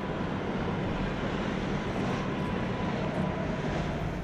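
Steady rumble and hiss of distant engine noise, even in level throughout, with a faint steady hum.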